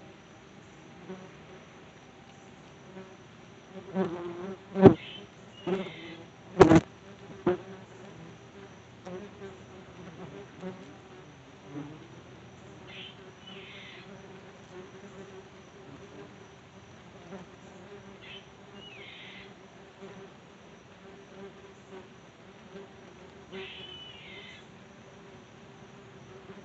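Yellow jackets buzzing around a phone's microphone in a steady hum, with a few loud sharp knocks against the phone from about four to seven and a half seconds in.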